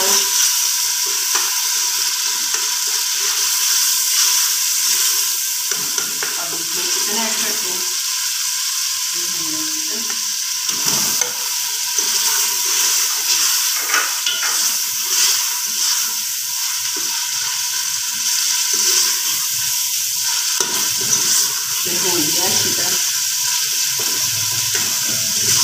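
Chicken pieces and spice masala sizzling in hot oil in an aluminium pot, with a steel spoon stirring and scraping against the pot's sides and bottom.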